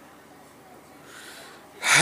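A man's audible in-breath close to the microphone about a second in, after a short pause. His voice comes back with a long held note just before the end.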